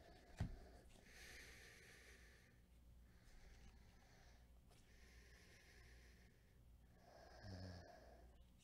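Near silence with slow, soft breaths through the nose close to the microphone, about three breaths. A single light tap comes about half a second in.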